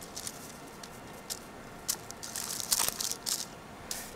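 Faint scratching of a paintbrush stroking acrylic paint onto a plastic condor figure, with small crackles and clicks of the plastic being handled, busier in the second half.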